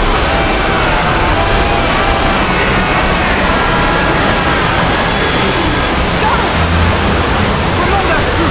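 Many video soundtracks playing at once and blurring together into a loud, steady wash of noise, with voices and music faintly audible through it.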